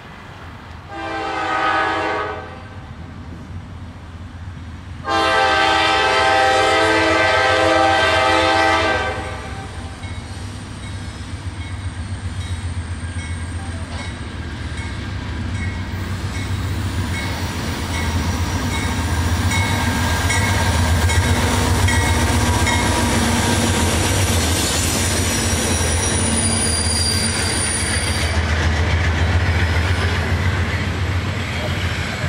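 A diesel freight locomotive horn sounds a short blast, then a longer blast of about four seconds. The rumble of the lead locomotives then builds as the train approaches and passes, followed by the wheels of double-stack container cars. A faint high squeal comes near the end.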